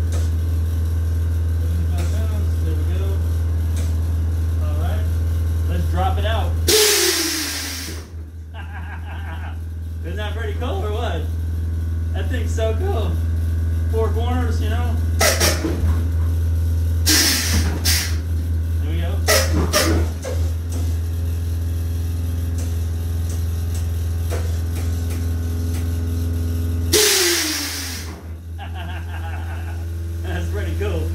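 Air compressor of a car's air-ride suspension running with a steady low drone. Six loud hisses of air rush through the manual air valves as the air bags are filled and dumped. Two of the hisses come about 7 and 27 seconds in, and four come close together between about 15 and 20 seconds.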